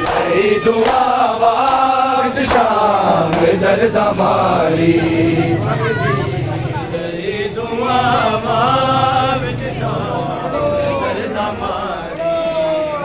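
Crowd of men chanting a Punjabi noha lament, with sharp slaps of hands beating on bare chests (matam) cutting through the chant, most often in the first few seconds.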